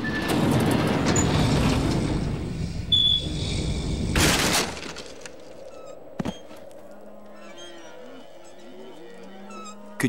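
Cartoon sound effects: a long rushing noise, then about four seconds in a loud crash of breaking wood as the boy smashes a hole through a wooden barn door. A short thud follows a couple of seconds later, then soft music.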